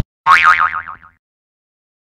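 A cartoon 'boing' sound effect: a single springy tone that wobbles in pitch as it falls, fading out within about a second.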